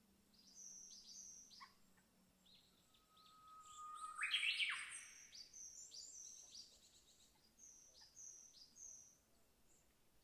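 Forest birds calling: short, high, down-slurred whistles repeated over and over, quiet in the overall mix. About four seconds in comes one louder call that holds a steady lower whistle and then sweeps sharply upward.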